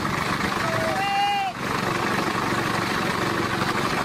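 Small engine of a walk-behind motor mower running steadily under mowing load. A person's short drawn-out call rises and falls about a second in.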